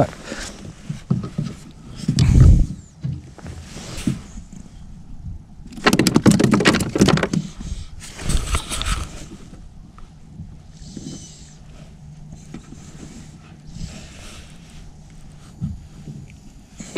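Handling noises in a plastic fishing kayak: bumps and scuffs against the hull and rustling of a waterproof jacket as a hand reaches for a small fish on the deck. There is a dull thump about two seconds in and a longer burst of scuffling from about six to nine seconds, then only quieter rustling.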